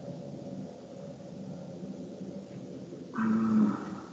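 Low steady background hum, with a short hummed voice sound about three seconds in.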